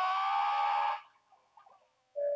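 A man's loud, high-pitched, drawn-out cry, rising slightly in pitch and held for about a second before cutting off.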